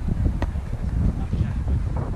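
Wind buffeting the microphone in a steady low rumble, with one sharp slap of a volleyball being struck by hand about half a second in.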